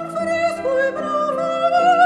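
A soprano singing held notes with a wide vibrato over piano accompaniment.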